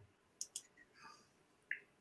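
Near silence: room tone broken by three or four brief, faint clicks.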